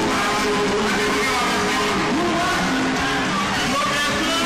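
Steady, loud din of a large street crowd, many voices overlapping, with music mixed in.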